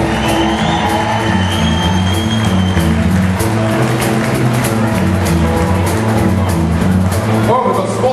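Live blues-rock band vamping on a steady groove: electric guitars and bass over a drum beat with regular cymbal hits, and a long high held note in the first three seconds.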